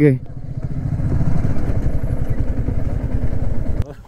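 Motorcycle engine running steadily at low revs, a rapid low exhaust pulsing with no rise or fall in speed. It cuts off suddenly just before the end.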